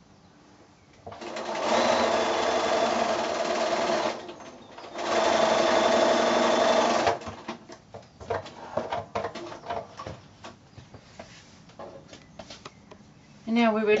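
Electric sewing machine stitching a patchwork seam in two steady runs of about three and two seconds, with a short stop between. Light clicks and rustling of fabric being handled follow.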